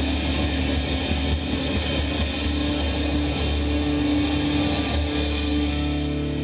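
Live rock band playing, led by an electric guitar ringing on held notes over keyboards and a steady low bass.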